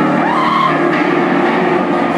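A live rock band playing loudly, led by an Explorer-style electric guitar. A high note slides up and holds about half a second in.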